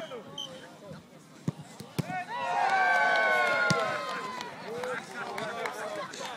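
Two sharp knocks, then several people let out a long, loud shout that falls in pitch, with quieter chatter around it.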